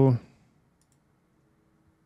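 The tail of a drawn-out spoken "so", then near silence with a faint steady hum.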